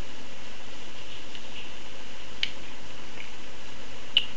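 Steady, even hiss of a noisy microphone, with one small click about two and a half seconds in.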